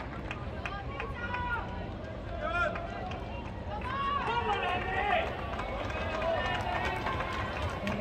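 Spectators talking in a tennis arena crowd, several voices over a steady murmur, with a few sharp clicks.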